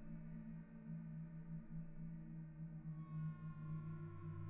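Faint ambient background music: a low, steady drone of held tones. A higher tone and a deeper one come in about three seconds in.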